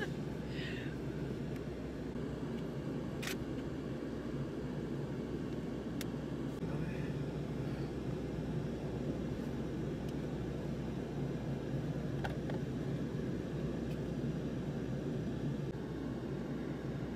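Steady low rumble of an idling vehicle engine, with a few sharp clicks.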